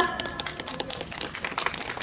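Applause: many people clapping their hands at once, a dense patter of claps.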